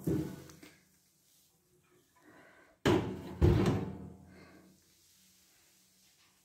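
Cast-iron wood stove's firebox door being shut: a sharp knock about three seconds in, then a heavier thud half a second later, each dying away quickly.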